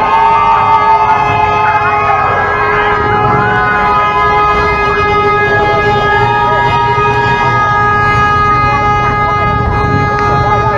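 A siren holding one steady pitch throughout, over the noise of a crowd.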